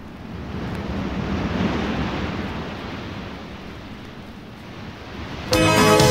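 Sea surf: one wave swelling up over about two seconds, then slowly washing back. Shortly before the end the song's band comes in suddenly and louder.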